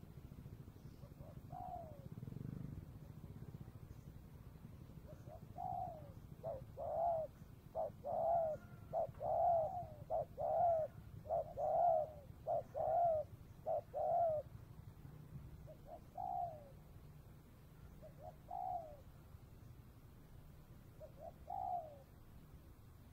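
Spotted dove cooing: a run of about ten short, slightly falling coos, roughly a second apart, then single coos every two or three seconds.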